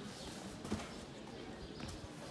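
Street ambience in a cobbled shopping lane: footsteps on the stone paving over a faint murmur of voices, with a sharp knock about three-quarters of a second in and a lighter one near the end.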